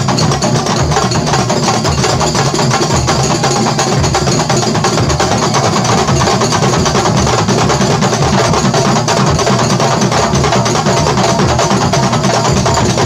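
A kuntulan percussion ensemble playing loud, fast, dense interlocking rhythms on terbang frame drums and kendang drums, with sharp hand strokes on the frame drums, without a break.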